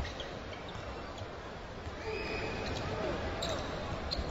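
Basketball arena sound of the broadcast: a steady crowd murmur with a basketball being dribbled on the hardwood court, and a brief high squeak about two seconds in.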